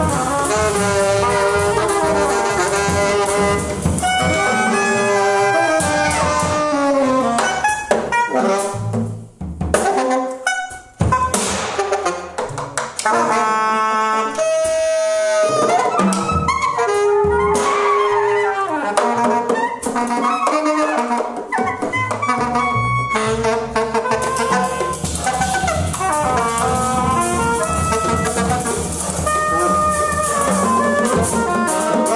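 Free-improvised jazz from a large ensemble of about twelve players, saxophones and brass holding and sliding long notes over one another. About nine seconds in the sound thins out briefly, broken by a few sharp hits, then the horns build back in.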